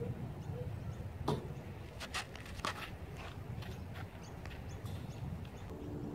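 Tennis ball struck with a racket and bouncing on a clay court: a few sharp knocks between about one and three seconds in, over a low steady outdoor background.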